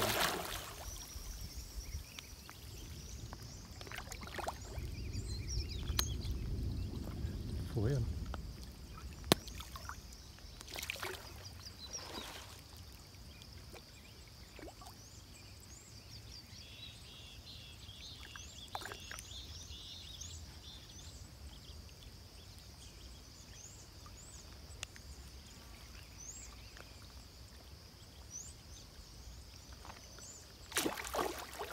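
Pond water sloshing and lapping as large tambacu take floating bread at the surface, with the tail of a big splash fading in the first second. A steady high-pitched hum with faint chirps runs underneath, and there are a few soft knocks.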